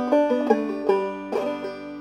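Banjo played clawhammer style: the plain, unvaried opening phrase of an old-time tune, a run of plucked notes that ends about one and a half seconds in on a last note left ringing and fading.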